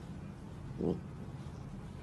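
Husky puppy giving one short, low vocal sound about a second in, over a steady low background hum.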